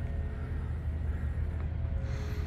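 Power liftgate on a Mercedes-Benz GLK 250 running open, a faint steady whir over a low steady hum.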